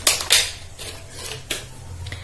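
Clear plastic packaging crinkling and crackling in a few sharp crackles as a makeup brush is pulled out of it.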